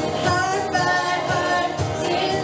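Live band playing a song: women's voices singing over acoustic guitar, electric bass, electric guitar and a drum kit keeping a steady beat of about two hits a second.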